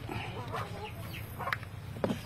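Faint chicken clucking, a few short calls in the first second, with one light click about one and a half seconds in.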